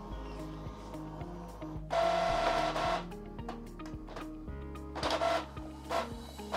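Epson EcoTank ET-3850 inkjet printer starting a copy job: a mechanical whir lasting about a second, about two seconds in, then shorter whirs near the end as printing begins. Background music plays throughout.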